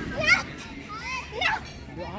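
Young children shrieking and calling out as they run about playing. Two high-pitched squeals stand out, the loudest just after the start and another about halfway through.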